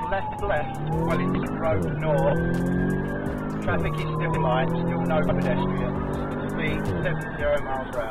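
Police car siren in a slow rising-and-falling wail over a car engine running hard, its note shifting a few times, heard from inside the pursuing police car.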